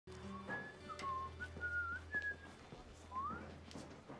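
A person whistling a short tune of several held notes, with a rising slide near the end, over a few light clicks.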